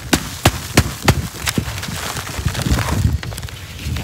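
Plastic plant pot being handled and knocked while sand and soil are cleared out of it. There is a string of sharp knocks, about three a second for the first second and a half and sparser after that, with low handling noise between them.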